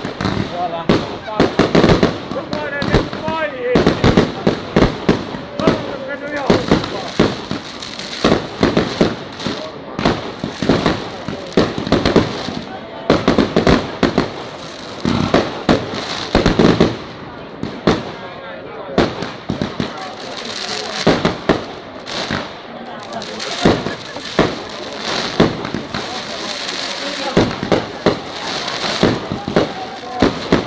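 Fireworks display: aerial shells bursting overhead in a rapid, unbroken barrage of bangs. In the second half a steady high hiss and crackle runs between the bangs.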